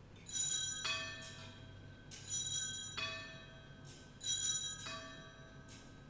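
Altar bells (Sanctus bells) rung three times, each ring a quick double shake of several bright, clashing pitches that rings on and fades.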